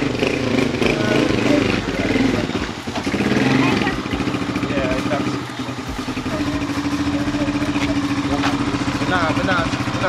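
Motorcycle engine idling with a fast, even putter.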